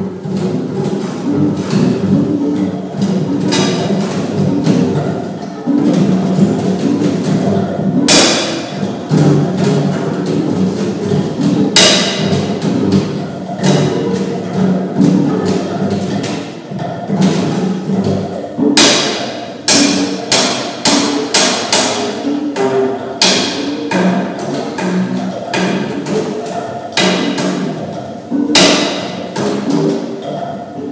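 Two acoustic double basses playing a duet: low notes on the strings, broken by sharp wooden knocks and slaps on the instruments, single ones at first, then several in quick succession past the middle and again near the end.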